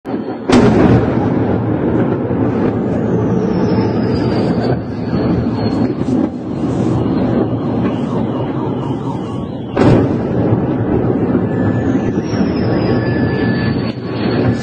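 Two heavy cruise-missile blasts, the first about half a second in and the second near ten seconds, each followed by a long rolling rumble. Between the blasts, a faint high whine falls in pitch twice.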